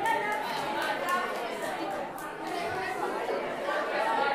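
Overlapping chatter of several young people's voices talking at once.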